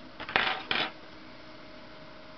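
A brief clatter in two quick bursts about half a second in, like something tossed onto a hard dish or tray, then quiet room tone with a faint hum.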